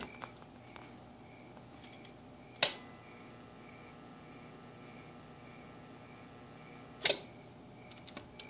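A CB transmitter keyed into a linear amplifier for an unmodulated dead-key carrier: a sharp click as it is keyed up, a faint steady hum while the carrier runs, and a second click as it is unkeyed about four and a half seconds later, over a low steady fan noise.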